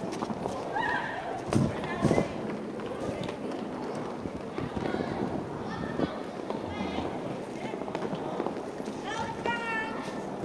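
Roller skate wheels rolling and clattering on a wooden rink floor, with two sharp knocks about a second and a half and two seconds in. Voices call out in the hall about a second in and again near the end.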